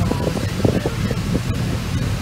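Steady engine and road rumble heard inside the cabin of a moving car.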